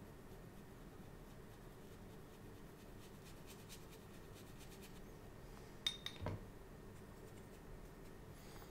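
Faint, soft strokes of a small brush on watercolour paper, then about six seconds in a sharp clink and a short knock as the brush is taken to the water pot.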